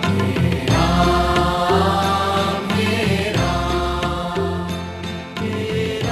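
Hindu devotional bhajan music, a Ram bhajan, with held melodic notes over a steady bass line.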